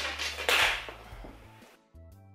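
A large length of striped curtain fabric swishing and rustling as it is swept up and flung through the air: two loud swishes in the first second, then fading. Quiet background music underneath.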